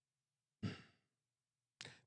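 One short breath out, like a sigh into a close microphone, about half a second in; otherwise near silence.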